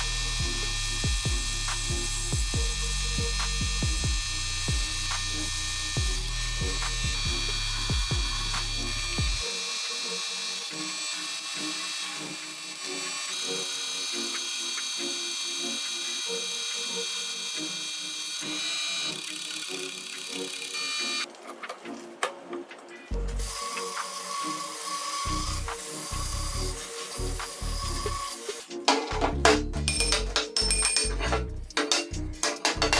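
Drill press boring holes through a steel flat bar with twist drills, the bit cutting steadily under background music. The drilling lets up briefly about two-thirds of the way through.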